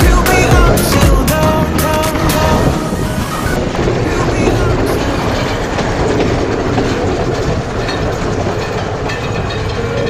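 Music with a beat for the first three seconds or so, then the sound of a moving passenger train heard from beside an open carriage doorway: a steady noise of wheels running on the rails.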